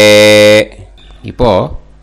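A man's voice chanting the close of a Vedic Sanskrit sankalpam, drawing out the last syllable on one long held note that stops about half a second in. A short spoken syllable follows a second later.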